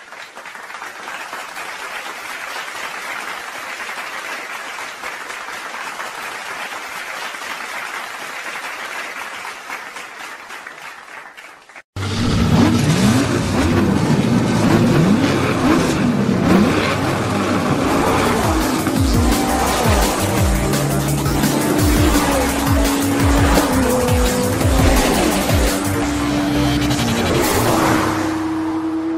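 Intro soundtrack: a steady rushing noise for about the first twelve seconds, then, after a sudden cut, race car engine sound effects with revving glides and tyre squeal over music with a beat.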